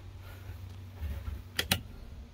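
Two quick plastic clicks about one and a half seconds in: rocker switches on a boat's console switch panel being flipped to test the lights, over a low steady rumble.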